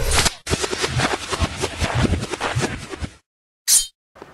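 A rapid, irregular run of sharp clicks and clatter that cuts off suddenly after about three seconds, followed by one brief burst near the end.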